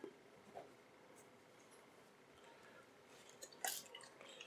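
Near silence with faint handling noises, then a short wet squirt about three and a half seconds in as polish is squeezed from a bottle onto the mat.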